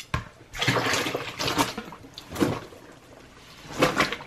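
Wet clothes being dropped and pushed into a plastic tub of dye water. The water splashes and sloshes in several separate surges.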